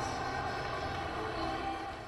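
Football stadium ambience, a steady crowd and ground hubbub with music playing over it, fading away at the very end.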